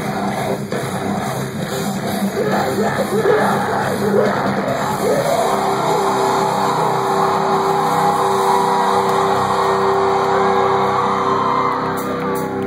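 Live metalcore band playing, with the vocalist yelling over the band, then a long held note from about halfway through, heard through a phone's microphone from inside the crowd.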